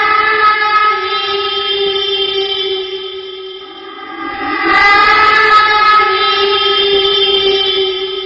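A horror sound effect: a long, held, horn-like tone rich in overtones. It fades about halfway through, then swells back with a slight upward bend in pitch.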